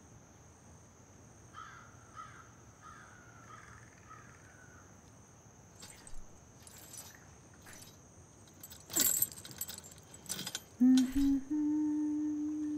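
Metal garden gate rattling and clanking as it is handled: a few light clicks, then louder metallic rattles in the last few seconds. Underneath runs a steady high whine with a few bird chirps early on, and a low held music tone comes in near the end.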